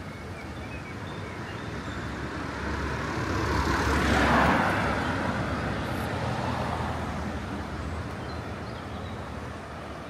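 A motor vehicle passing by on the road, growing louder to a peak about four seconds in and then fading away.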